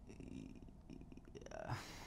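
A faint, low, creaky 'hmm' from a man thinking before he answers, a rapid rattling pulse in the voice, then a short intake of breath near the end.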